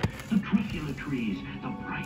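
A narrator's voice speaking over soft background music, playing from a television.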